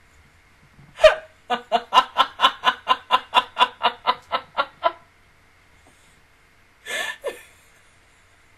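A woman laughing hard. One sharp burst comes about a second in, then a run of evenly paced ha-ha pulses, about five a second, lasting some three and a half seconds, and two short bursts near the end.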